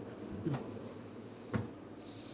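Quiet boat-cabin room tone with a faint steady low hum, a short soft sound about half a second in, and a single knock about a second and a half in as people move through the cabin.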